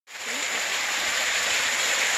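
Small waterfall pouring down a rock face and splashing onto wet rocks: a steady rush of water that fades in at the very start.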